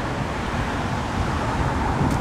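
Steady outdoor city background noise: an even, low rumble.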